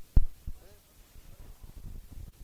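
Muffled thumps and low rumble from a handheld phone microphone being jostled in a moving crowd. There is one sharp knock just after the start, then faint low crowd noise.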